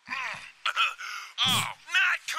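Mario's voice in the animated film groaning and grunting: a run of short cries, each falling in pitch, the loudest about halfway through.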